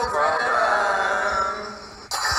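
A drawn-out vocal call that wavers in pitch and fades out near the end.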